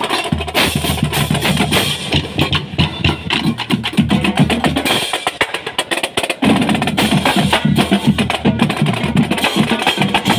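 Marching drumline playing: rapid drum strokes and rolls with crash cymbals. The playing drops off briefly about six seconds in, then the full line comes back in loud.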